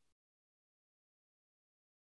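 Near silence: a pause in the lecture audio, essentially digital silence after the last word fades.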